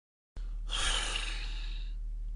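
A person sighing: one long breathy exhale, over a steady low hum that cuts in and out abruptly.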